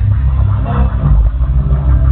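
Hip-hop beat played loud through a concert PA, its heavy bass dominating.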